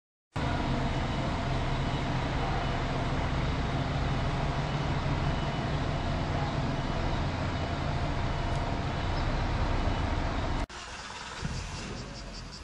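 Steady, loud motor-vehicle engine rumble. It starts suddenly just after the beginning and cuts off abruptly about ten and a half seconds in, giving way to quieter street background.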